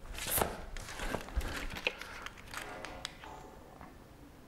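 Footsteps on a concrete shop floor, with a short scuff about a third of a second in and a few light clicks of a hand tool being handled.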